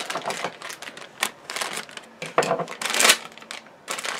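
Foil blind bag crinkling and tearing as it is ripped open by hand: a rapid run of sharp crackles and rustles, loudest about three seconds in.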